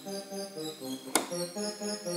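Casio CTK-4200 keyboard playing a user sample layered with its arpeggiator: a quick, evenly repeating run of short notes. A sharp click is heard a little after a second in.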